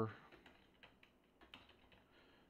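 Computer keyboard keys clicking faintly as a short word is typed, a few scattered key presses.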